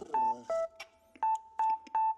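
The beat's instrumental: short, clipped electronic keyboard notes, mostly on one higher pitch with one dip to a lower one, and sharp clicky percussion ticks in between. The notes sound much like telephone dial tones.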